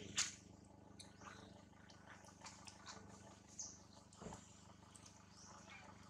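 Faint scattered clicks and rustles of dry leaf litter as macaques shift about on the ground, with a sharp click just after the start and a soft thump about four seconds in.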